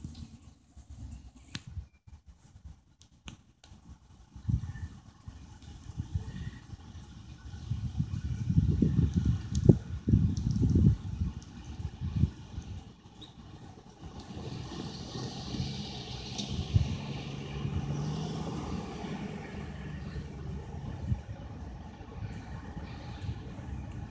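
Two EMD GP38-2 diesel-electric locomotives approaching from a distance, their V16 two-stroke diesels a faint, steady low drone that becomes clearer about halfway through. Wind gusts on the microphone, loudest in the first half.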